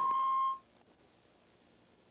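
A steady electronic beep tone at about 1 kHz on the broadcast audio, which cuts off suddenly about half a second in.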